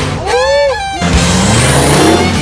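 A man's drawn-out exclamation, pitch rising then falling, cut in abruptly just after the start and cut off about a second in, followed by background rock music with a steady bass line.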